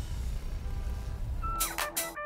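Low steady rumble of a car cabin from the music video's soundtrack, then about one and a half seconds in the song's music starts with short, sharp, repeated instrumental stabs.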